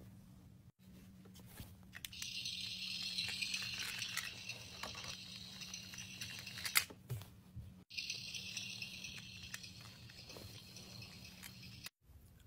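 Plastic toy tractors being moved over a cloth sheet: a faint rustling hiss with a few light clicks, over a low steady hum.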